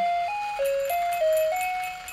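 Animated Santa Claus figure playing an electronic Christmas melody, one plain note at a time, stepping up and down at about three notes a second.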